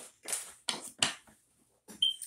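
Tarot cards being handled: a few short papery flicks and rustles in quick succession.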